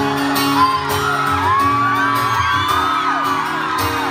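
Live music with an acoustic guitar accompaniment, under a crowd of fans screaming and whooping in many overlapping high voices.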